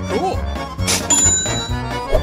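Upbeat background music with a steady beat, with a short chime-like tone that rises and falls just after the start.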